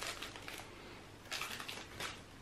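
Faint rustling of a plastic candy-bar wrapper being handled, with a short burst of crinkling about one and a half seconds in.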